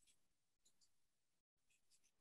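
Near silence: a pause with only a faint noise floor.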